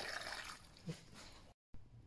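Cold water pouring in a thin stream into a pot packed with vegetables, filling it to cover the ingredients; the faint splashing trickle fades out about half a second in.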